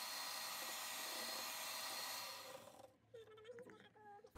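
Sigma electric hand mixer running steadily, faint, as it beats eggs and sugar in a steel bowl; the sound dies away a little after two seconds in.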